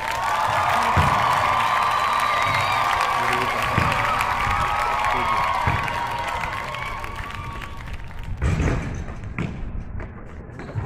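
A loud, long-held melodic sound with a wavering pitch that starts suddenly and fades out near the end. Under it, a basketball thuds on the paved court every second or two.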